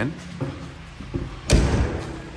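Motorhome entry door swung shut with a single slam about a second and a half in, after a couple of lighter knocks.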